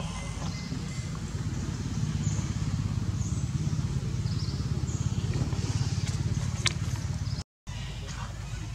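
A steady low rumble with an even, rapid pulse, like a small engine running, with a few faint high chirps above it; it drops out briefly near the end.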